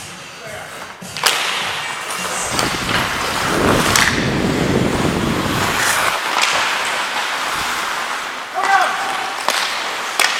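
Ice hockey play heard from on the ice: several sharp cracks of sticks and puck, with the scrape of skate blades on the ice in the middle stretch. A short shout comes near the end.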